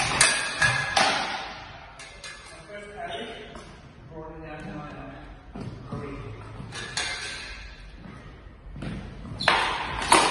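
Sidesword blades and bucklers clashing in a sparring exchange: sharp metallic strikes that ring on in a large hall, a cluster at the start, another about a second in, one near seven seconds and a flurry near the end.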